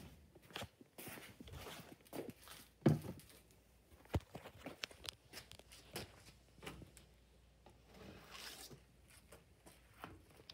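Handling and movement noise: scattered soft knocks, clicks and rustles, the loudest about three seconds in, over a faint low hum.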